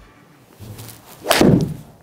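A golf iron striking a ball off a hitting mat: one sharp crack about a second and a quarter in, trailing a short lower thud.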